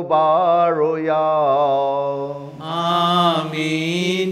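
A man's voice chanting a sung Mass prayer in long, gently wavering held notes over a steady low drone, with a brighter, stronger phrase near the end.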